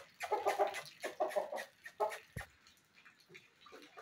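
Aseel rooster giving three short calls in quick succession in the first two seconds as it is handled, with a single dull thump a little after the middle.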